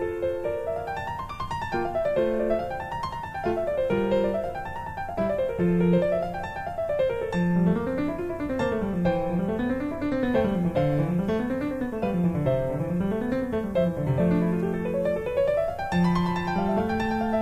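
Background piano music: flowing arpeggios that rise and fall over and over, over a lower line moving the same way.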